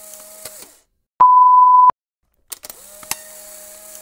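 A single electronic beep: one steady high tone lasting under a second, about a second in, with a faint steady hum and a few clicks before and after it.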